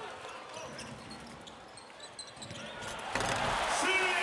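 A basketball being dribbled on a hardwood court, with faint short sneaker-and-ball sounds under the arena noise. The arena noise swells about three seconds in as the ball goes up.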